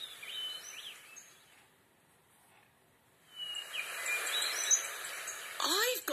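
Forest sound effects in a recorded children's audio story, played back through a speaker: a soft hiss with short high bird chirps. It dips to near silence in the middle, then comes back with the chirps before a voice begins near the end.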